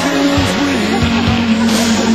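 Loud music playing, with a single long held note starting about a second in.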